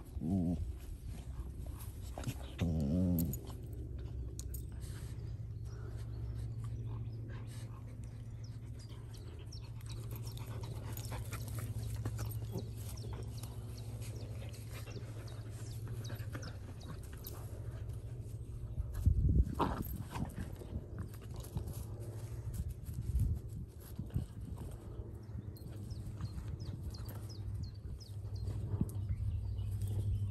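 Dogs rolling and playing in grass: two short pitched dog vocalisations, one right at the start and one about three seconds in, then rustling and a loud thump about nineteen seconds in.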